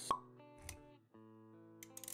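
Intro-animation sound effects over soft background music: a sharp pop just after the start, the loudest sound, then a soft low thump, then held synth-like chords with a few light clicks near the end.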